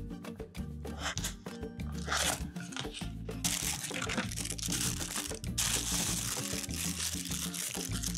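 Paper and plastic wrap crinkling in bursts as a slab of fudge is taken from its box and unwrapped, over steady background music.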